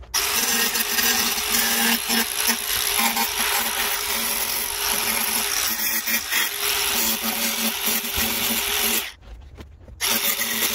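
Cordless angle grinder with a thin cut-off disc cutting through the steel of an old diamond saw blade: a loud, steady, high-pitched grinding screech. It stops abruptly about nine seconds in.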